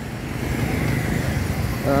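Steady rumble of a motor vehicle engine running close by, growing a little louder over the first second. A man says 'uh' at the very end.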